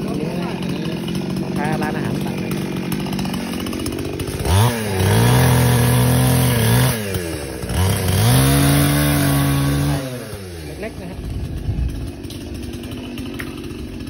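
Two-stroke chainsaw revving up twice, each time holding a steady high pitch for two to three seconds before dropping back, with a lower engine note around it: a chainsaw at work cutting small bamboo stems.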